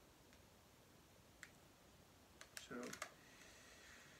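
Near silence broken by a few faint, sharp clicks of a soft-plastic lure package being handled and opened, with a brief murmured voice about three seconds in.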